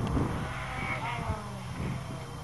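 Distant four-cylinder car engines in a field race, an Eagle Talon 2.0 16-valve and an Olds Achieva 2.3 Quad 4, heard faintly across the field. There is a rising rev about a second in.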